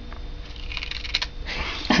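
A cat biting into and chewing a cucumber: a run of crisp crunches that starts a little under a second in and carries on to the end.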